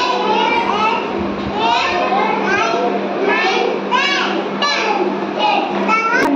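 A young child speaking in a high voice, with other children's voices around, over a steady low hum.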